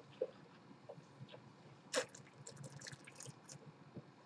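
Faint wet mouth sounds of wine being worked around the mouth during tasting: scattered small clicks, a short sharp slurp about halfway through, then a quick run of tiny crackling ticks.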